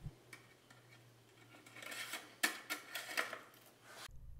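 Faint metallic ticks and light clatter from handling an engine oil dipstick and rag, with a cluster of them from about two seconds in.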